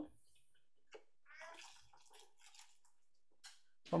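Hot milk poured in a thin stream from a saucepan into a copper pot of mandarin juice, a faint trickle and splash of liquid, with a couple of light clicks.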